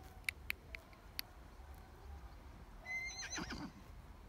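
A horse foal whinnies once about three seconds in: a call that starts high and falls away in pitch. A few sharp clicks come in the first second.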